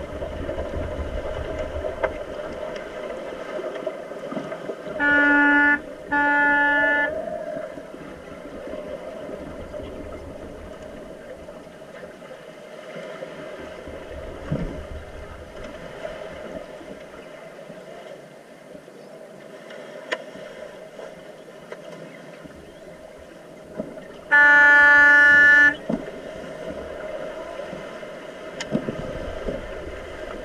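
Underwater rugby referee's signal horn heard through the water: two short blasts about five seconds in, then one longer blast about twenty-five seconds in. Between them a steady underwater rush and bubbling from the players swimming.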